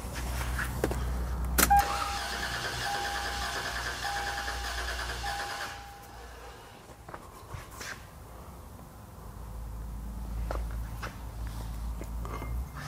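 A 1998 Toyota 4Runner's 3.4-litre V6 (5VZ-FE) cranking over on the starter with one spark plug removed, for about four seconds in the second half. Earlier, a click and then a repeating beep sound for about four seconds over a low hum.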